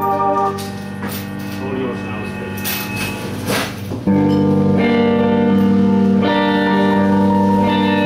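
Live band starting a song: a few held guitar and keyboard notes at first, then about four seconds in the whole band comes in louder with long held chords.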